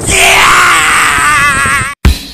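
A man screaming at the top of his voice in one long, sustained cry. The pitch wavers near the end, then cuts off abruptly.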